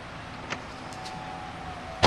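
Mercedes-Benz convertible standing with a low steady hum and a faint thin whine, with one sharp click about half a second in.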